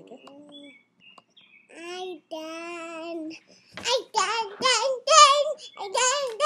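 A little girl singing wordless sing-song notes: a long held note about two seconds in, then louder, higher, wavering notes from about four seconds on.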